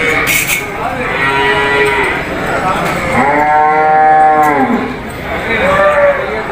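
Cattle mooing at a livestock market: a shorter call about a second in, then one long moo lasting about a second and a half that rises and falls in pitch, with another call starting near the end.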